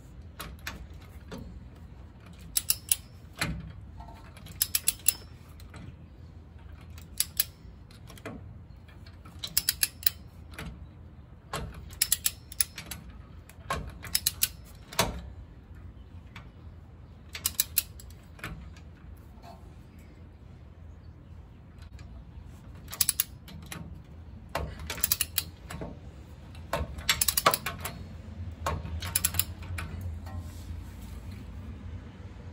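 Click-type torque wrench ratcheting on an air bag bracket bolt through a socket and universal joint: short runs of three to five sharp ratchet clicks on each back-stroke, about every two seconds, with a pause of a few seconds past the middle. The wrench is set to 20 foot-pounds but never gives its break-over click.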